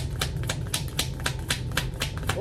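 A deck of tarot cards being shuffled by hand: a quick, even run of card-edge clicks, about eight a second.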